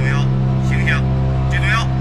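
Steady drone of a fighter jet's engine heard in the cockpit, with three short voice calls over it.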